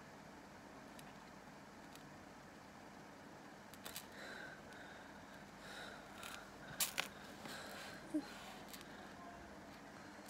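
Faint handling sounds of a thin metal chain being twisted and tied by hand: a few small clicks and scrapes, the loudest pair about seven seconds in, over a quiet room with a low steady hum.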